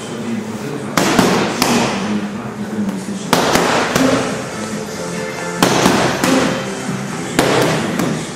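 Boxing gloves smacking a coach's focus mitts in four quick combinations of two to four punches each, one about every two seconds, with each strike ringing briefly in the room. Background music plays underneath.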